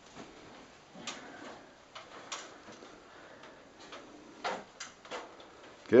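A few faint, scattered clicks and light knocks, with quiet room tone between them.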